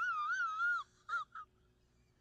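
A man's high-pitched, wavering falsetto whine lasting just under a second, followed by two short squeaks.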